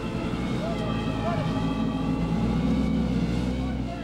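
Strong sandstorm wind blowing: a steady low rumble with hiss, with faint voices over it.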